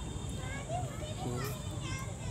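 Children's voices at play some way off: scattered high-pitched calls and shouts that rise and fall in pitch, over a low steady rumble.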